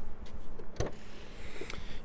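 Ford Fiesta hatchback tailgate being unlatched and swung open: a click at the start and another a little under a second in, over a steady faint background hiss.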